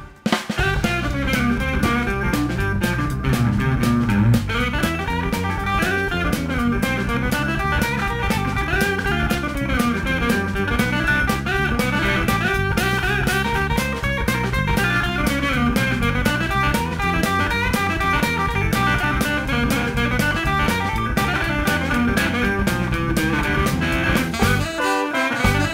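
Blues band playing an instrumental passage: guitar leading over drum kit and bass guitar, at a steady beat.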